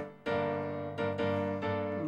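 Keyboard playing tango accompaniment between sung lines. Two held chords, struck about a quarter second and a second in, each left to ring and fade.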